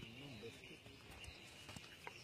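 Near silence: faint outdoor ambience with a steady high-pitched hum, and a faint distant voice briefly near the start.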